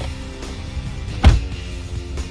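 Music playing over the steady low rumble of a moving pickup heard from inside the cab. One loud, short thump comes about a second in.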